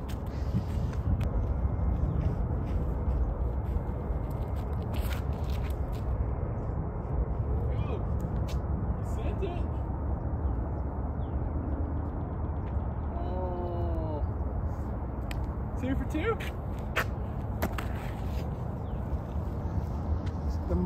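Steady wind rumble on the microphone from a 10 to 15 mph breeze, with a few light clicks. About 13 seconds in, a bird gives four short calls in a row, each falling in pitch.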